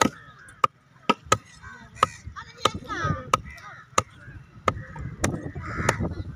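A heavy knife chopping fish on a round wooden log block. There are about eleven sharp chops, roughly one every half second or so.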